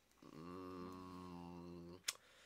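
A man's drawn-out hum, held at one steady low pitch for well over a second: a wordless thinking "hmm" in a pause of conversation.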